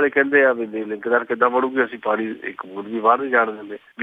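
Only speech: a man talking continuously, with a short pause just before the end.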